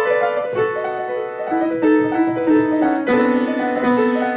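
A grand piano played in a lively classical style, with a quick run of notes over held lower notes and a fresh, louder chord struck about three seconds in.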